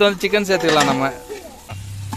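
A song with a singing voice plays over the sizzle of raw chicken pieces being dropped into hot masala in a large metal pot over a wood fire.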